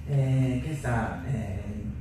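Speech: a voice talking through a hall's sound system, with one long drawn-out syllable near the start.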